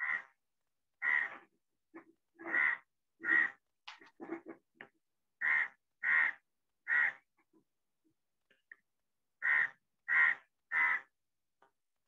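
A bird calling in short repeated calls, mostly in sets of three about three-quarters of a second apart, with pauses of a second or two between sets.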